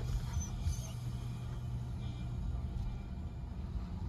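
Steady low road and engine rumble inside a slowly moving car's cabin.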